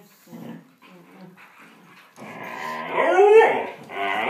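Two dogs play-fighting: short low growls, then from about two seconds in a husky's loud howl that rises and falls in pitch.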